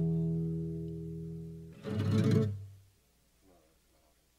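Closing guitar chords of a song: a held chord rings and slowly fades, then one last fuller chord about two seconds in dies away to near silence.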